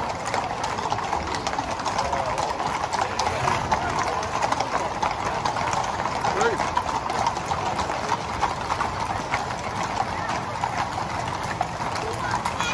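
Many horses' hooves clip-clopping at a walk on a tarmac road, a dense run of overlapping hoof strikes, under the steady chatter of a crowd.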